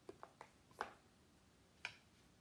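A few light taps and knocks on a round black baking pan, sharp and short, with two louder knocks about a second apart.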